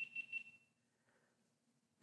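Near silence: a faint, high, steady electronic tone dies away within the first second, then the sound drops out entirely.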